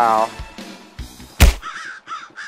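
A single sharp bang about a second and a half in as a flat lid is dropped back onto a plastic drum rubbish bin.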